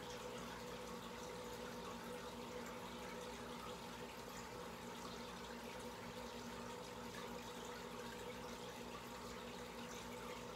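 Aquarium water bubbling steadily from an air-driven sponge filter's bubble stream, with a steady low hum underneath.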